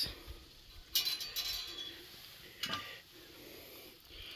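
Metal clinking and clattering as a steel plate is handled, one ringing clatter about a second in, then a smaller knock.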